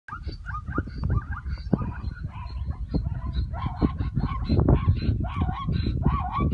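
Herd of plains zebras calling over one another: many short, repeated barking calls that rise and fall in pitch, coming thick and fast, over a steady low rumble.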